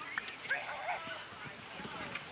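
A dog barking, two short barks about half a second apart.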